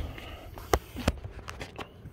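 A few sharp clicks and light knocks from handling a pickup truck's door, the loudest about three-quarters of a second in and another just after a second in.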